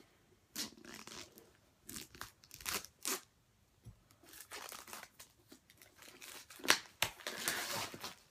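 Cardboard and plastic packaging of a Beats Studio Wireless headphone box being handled and opened by hand: a series of irregular scrapes, rustles and tearing sounds, with a sharp knock about two-thirds of the way through followed by a longer rustle.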